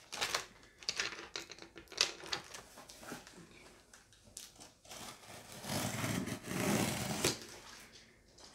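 Packaging being handled: irregular rustling and clicking, with a louder, longer stretch of rustling and scraping a little before the end.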